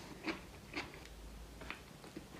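Faint crunching of crispy glazed fried chicken wings being bitten and chewed, a few short sharp crunches about half a second apart.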